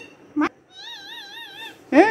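Rose-ringed parakeet (Indian ringneck) giving a short sharp call, then a drawn-out mimicked cat meow whose pitch wavers up and down about four times a second.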